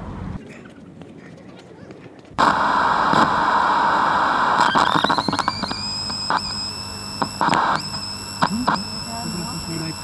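A sudden loud rush of noise starting about two seconds in, joined a couple of seconds later by a high whine that rises and then holds steady, with a few short clicks.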